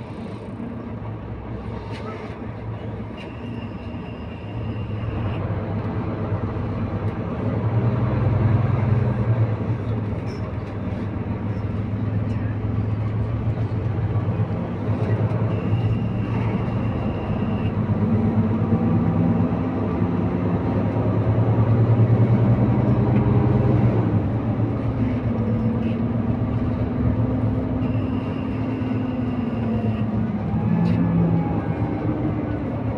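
Interior of a Mercedes-Benz O530K Citaro C2 city bus under way: diesel engine and ZF EcoLife automatic gearbox running. The engine note climbs in pitch for several seconds past the middle, then steps down once as the gearbox shifts up. A faint high tone sounds three times, about two seconds each.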